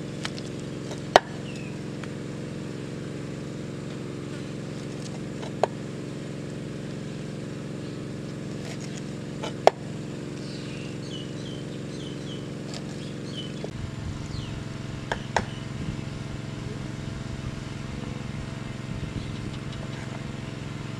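Knife blade striking a wooden cutting board in a few sharp knocks, about four seconds apart, while small fish are cut. A steady motor-like hum runs underneath, and faint bird chirps come in the middle.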